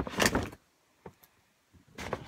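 A short burst of handling noise, rustling and clicking, in about the first half second. Then near silence, with one faint click about a second in.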